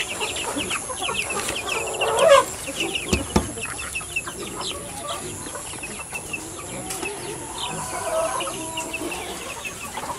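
Chickens: a flock of chicks peeping in many short high chirps, with hens clucking beneath them and one louder, falling hen call about two seconds in.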